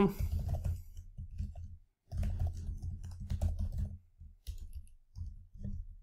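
Typing on a computer keyboard in quick runs of keystrokes, with short pauses about two and four seconds in.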